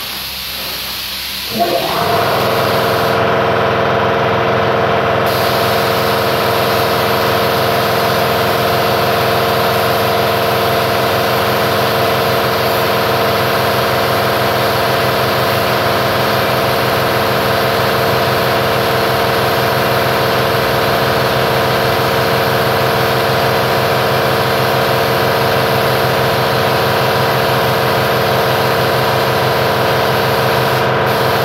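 A steady hiss of air, then about one and a half seconds in an electric motor starts with a quick rising whine and settles into a steady, even hum over the hiss.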